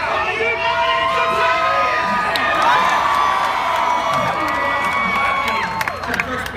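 Large crowd cheering and screaming, many high voices holding long cheers at once, which fall away just before the end.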